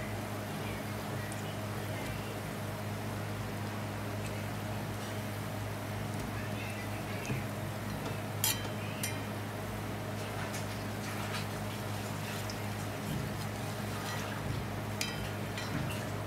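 Tal palm fritters deep-frying in a wok of hot oil, sizzling steadily over a low steady hum. A metal slotted skimmer clinks against the wok a few times, the sharpest clink about eight and a half seconds in.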